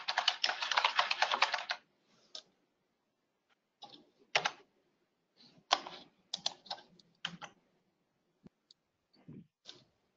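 Typing on a computer keyboard: a fast run of key clicks for the first couple of seconds, then scattered single keystrokes and short bursts of typing.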